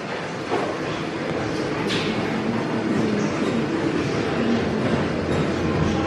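Steady machine noise of a busy gym, with treadmills and exercise machines running and a faint low hum underneath.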